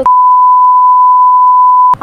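One steady, high-pitched beep held for nearly two seconds, then cut off abruptly: a censor bleep laid over the interviewee's spoken words.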